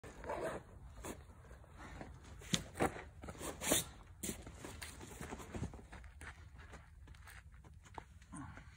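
A few sharp crunches and scuffs, the loudest in the middle, as climbing shoes step on sandy ground and crash pads.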